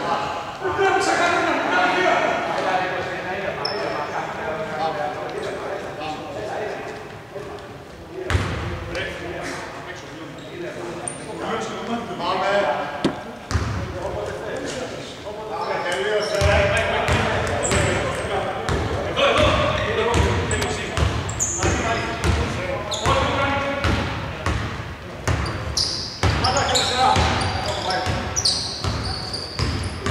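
A basketball being bounced on a hardwood court in a large, echoing, mostly empty sports hall: isolated bounces at first, then steady dribbling from about halfway through. Players' voices carry across the court throughout.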